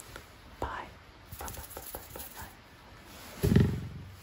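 Soft mouth clicks and breaths close to a sensitive ASMR microphone, followed about three and a half seconds in by a short, loud, low vocal sound.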